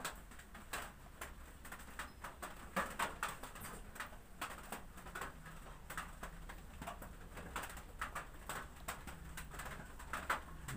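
Quiet, irregular clicks and rustles of hair being combed and barber tools being handled, over a faint low hum.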